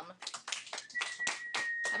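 A few students clapping, in separate uneven claps rather than full applause.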